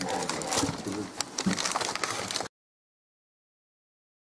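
Handling noise of small clicks and rustling, as things on the table are handled. It cuts off abruptly about two and a half seconds in, into dead silence.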